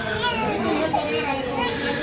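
Overlapping chatter of several people, with high children's voices among the adults, none of it clear words.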